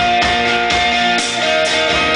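Live one-man-band instrumental: guitar chords, changing about a second in, played over kick drum and cymbals.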